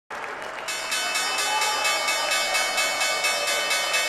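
The New York Stock Exchange closing bell ringing continuously, a dense, steady ringing that starts about half a second in, over applause from the people around it.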